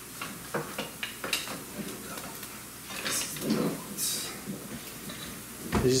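Scattered light clinks and knocks of kitchen utensils against pots and bowls as spätzle batter is spooned up.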